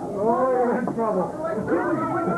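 Loud shouting and yelling voices, drawn-out and wordless, overlapping one another.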